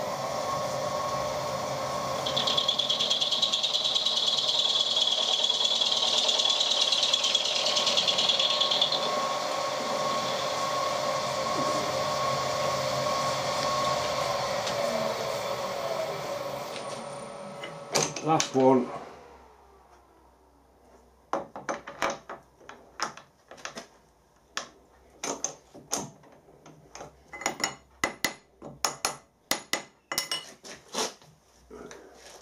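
Turret milling machine running, its cutter taking a flat on a brass hex held in the vise, with a high-pitched cutting noise from about two to nine seconds in. The machine stops a little past halfway with a few loud metallic knocks, followed by scattered light metal clinks and taps as the vise and tools are handled.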